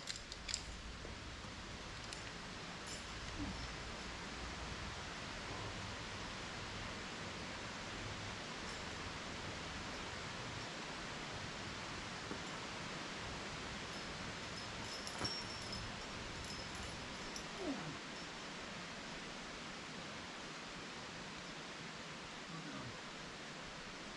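Steady low outdoor background hiss, with a few faint, brief clicks and rustles around the middle.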